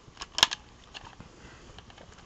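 Plastic clicks from handling a Nerf Switch Shot EX-3 toy pistol: one sharp click about half a second in, with a few lighter clicks around it and faint ticks after.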